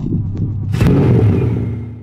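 Animated logo sting sound effect: a low rumbling swell, then a sharp hit a little under a second in that rings on and fades away.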